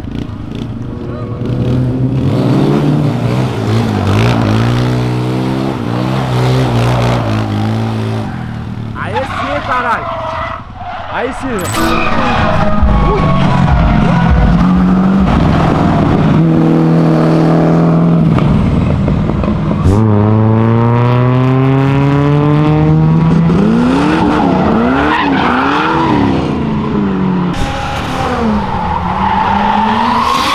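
Engines of drifting vehicles revving hard, their pitch repeatedly climbing and dropping, with one long rising run about two-thirds of the way in, and tyres squealing and skidding as they slide through the corners.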